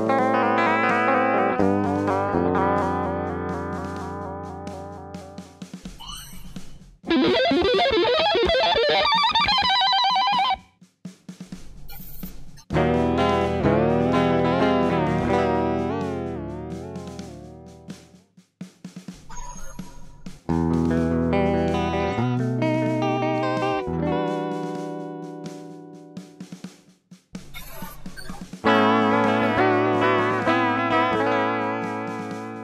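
Electric guitar played through an EarthQuaker Devices Aqueduct vibrato pedal: about five chords and held phrases, each struck and left to ring out and fade, their pitch wobbling up and down.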